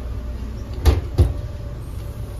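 A Multilevel rail coach's sliding side door moving, with two sharp knocks about a third of a second apart, over the steady low rumble of the stopped train.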